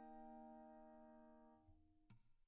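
Background music: the tail of a single held keyboard chord dying away and fading out near the end.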